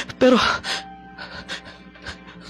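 A man's gasping, breathy sobs into a close microphone, acting out a distraught character, after a single spoken word. Faint background music plays underneath.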